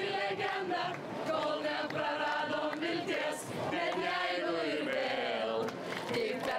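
A large group of marchers singing a song together, men's and women's voices mixed, on long held notes.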